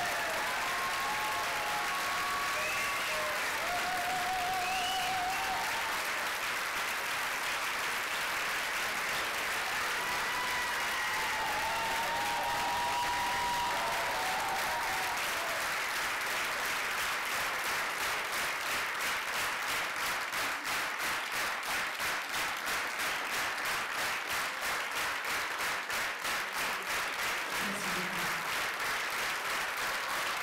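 Large theatre audience giving a standing ovation: sustained applause with cheers and whistles in the first half, turning a little past halfway into rhythmic clapping in unison.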